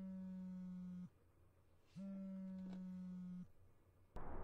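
Mobile phone on a table buzzing with an incoming call: two long low buzzes of about a second and a half each, with a pause of about a second between them.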